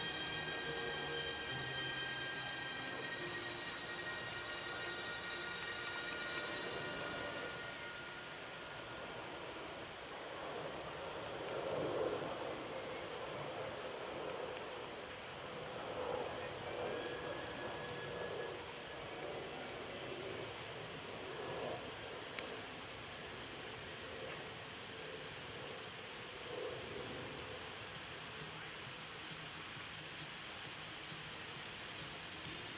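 Steady open-air background noise at a carriage-driving arena, with a few louder swells in the middle. Music from the loudspeakers fades out over the first several seconds.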